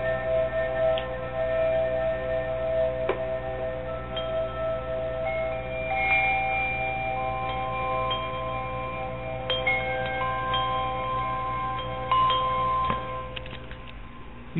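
Ambient background music of long, ringing chime-like tones at several pitches, entering one after another and held for seconds over a steady low drone.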